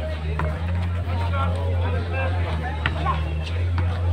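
Scattered voices of players and onlookers chatting, over a steady low hum, with a few faint knocks.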